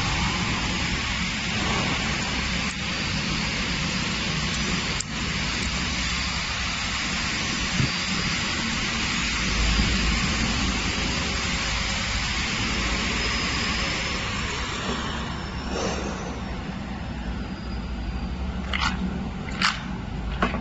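Three-side jar label applicator running: a steady machine hum with a high hiss over it. The hiss falls away about three-quarters of the way through, and a few sharp clicks come near the end.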